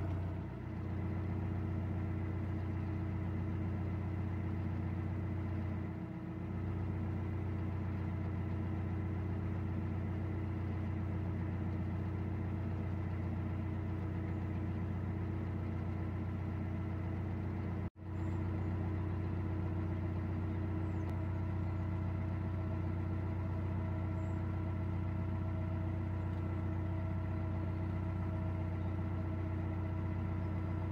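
Narrowboat's inboard diesel engine running steadily at cruising speed, a constant low drone, with a momentary break just past halfway.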